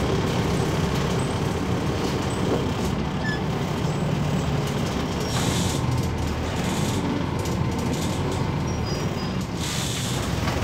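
Inside a 2014 MAZ 206.085 city bus, its Mercedes-Benz OM904LA four-cylinder turbodiesel running with a steady low drone under road noise. Short hisses come about halfway through and again just before the end.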